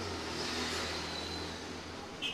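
Steady low hum of a motor vehicle's engine running, with a hiss over it and a faint high whine in the middle.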